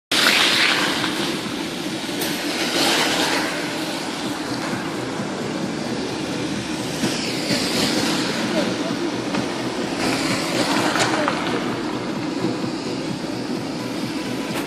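Road noise inside a moving car: a steady low rumble of tyres and engine on a wet, slushy road, with recurring swells of hiss.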